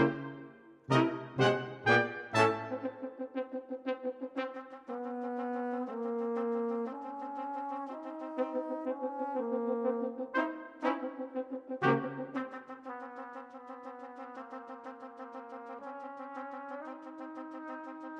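Brass quintet of two trumpets, French horn, trombone and tuba playing. It opens with a string of loud accented chords underpinned by low tuba notes, then moves to held chords over quick repeated notes. Another group of sharp accents comes about eleven seconds in.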